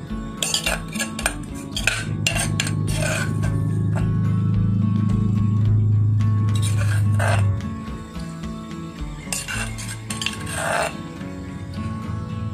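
Metal ladle scraping and clinking against the inside of a metal cooking pot as curry paste is stirred into the heating water. It comes in four short bursts of strokes, over background music.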